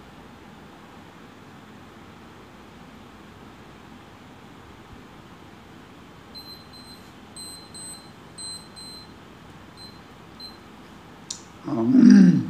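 Faint steady room hiss, then from about six seconds in a run of short, high electronic beeps, mostly in pairs, lasting about four seconds. A click and a man's voice come in right at the end.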